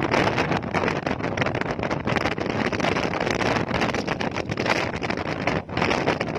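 Wind buffeting the microphone of a motorcycle riding at speed, over the bike's running and road noise, in a steady gusting rush with a brief lull near the end.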